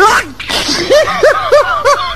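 A short, loud outburst of voice at the start, then a person laughing in quick, high-pitched bursts, about four or five a second, from about a second in.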